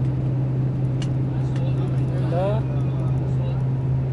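Steady low drone of a moving tour bus heard from inside the cabin, engine and road noise at an even speed. A faint voice comes briefly about halfway through.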